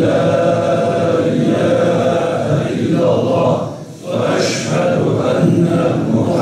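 A man's voice chanting a religious recitation in long, sustained melodic phrases, with a short pause for breath about four seconds in.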